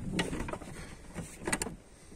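Clicks and light knocks of parts being handled in a car's rear seat area: a knock near the start, then two quick sharp clicks about one and a half seconds in.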